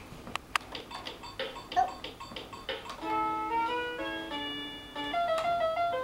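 Children's toy electronic keyboard: a few clicks and short notes as keys or buttons are pressed, then about three seconds in, a bright electronic melody of held notes starts playing and runs on.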